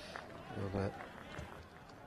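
A male commentator's voice speaking a word or two in a pause in the commentary, over faint steady background noise.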